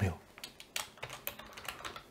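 Typing on a computer keyboard: a quick run of about ten light keystrokes entering a single word.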